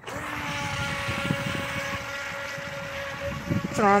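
Remote-controlled toy boat's battery-powered electric motor whining steadily as the boat speeds across the pond, the whine easing a little near the end.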